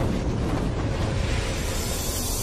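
Cinematic intro sound effect: a steady, noisy, rumbling roar like a fiery swell, which carries on until a loud hit brings in the music just after.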